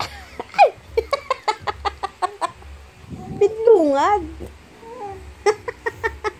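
Playful human vocal sounds: a quick run of about a dozen short clucks or tongue clicks, then a wavering, cooing call about three and a half seconds in, and a few more clucks near the end.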